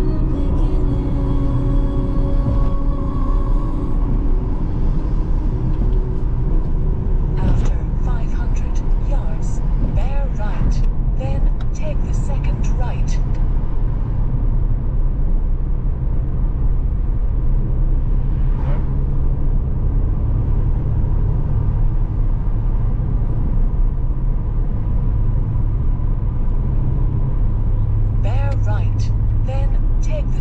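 Steady low road and engine noise inside a moving car's cabin. Music fades out over the first few seconds, and an indistinct voice comes through in short stretches in the middle and near the end.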